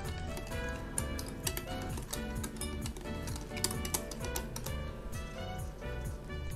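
Background music over the rapid light clicking of a wire whisk against a glass bowl as thin pancake batter is stirred.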